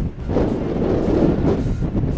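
Storm waves breaking against a sea wall: a loud, steady rushing of surf and spray, with wind buffeting the microphone.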